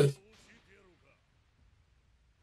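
A man's voice cuts off right at the start, followed by a short line of faint, distant-sounding dubbed anime dialogue, then near silence for the last second.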